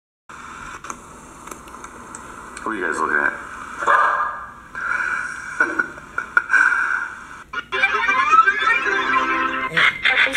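A video playing through a smartphone's small speaker: a voice and some music, thin and with little bass.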